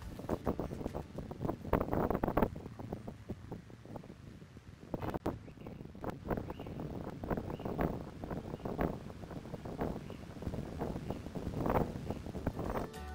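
Wind buffeting the camera microphone in irregular gusts.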